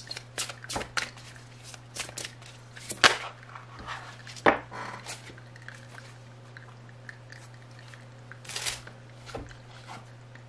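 Tarot cards being shuffled by hand: a quick run of flicks and clicks, with two louder snaps as the cards are squared and set down on a cloth-covered table. Near the end a short swish as a card is drawn; a faint steady hum underneath.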